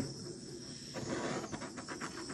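Small handheld torch flame hissing steadily as it is passed over wet white acrylic paint on a tile, popping the surface bubbles.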